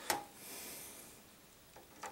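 A single sharp click of an HDMI cable plug knocking against the back of a desktop PC, followed by a soft scraping rustle lasting under a second as the cable is handled into place.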